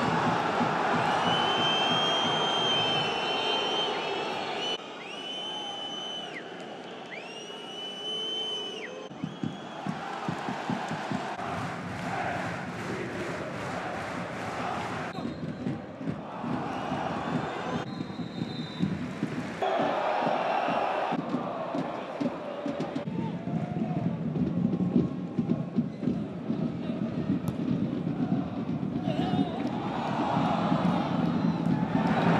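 Football stadium crowd noise: a dense mass of voices, cheering and chanting that shifts abruptly at several cuts. Several long, shrill whistle blasts sound in the first nine seconds.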